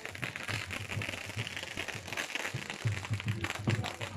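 Ground fountain fireworks hissing and crackling, with music playing underneath.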